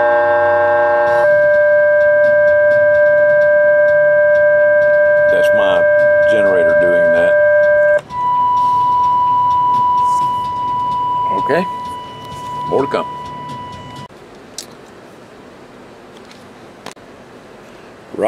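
Galaxy DX2547 CB radio's speaker putting out steady whistling tones while it receives a steady test signal on sideband, the S-meter reading S9. The tones change pitch twice, about a second in and about eight seconds in, then stop about fourteen seconds in, leaving a low hiss.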